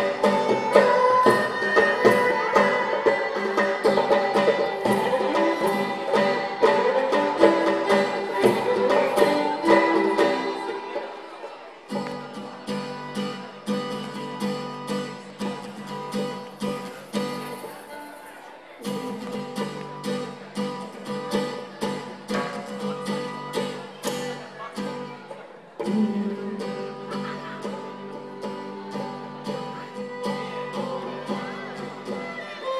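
Live acoustic folk music: a violin plays the melody over acoustic guitar, with a steady beat of hand percussion. About twelve seconds in, the music drops to a softer, sparser passage with longer held notes.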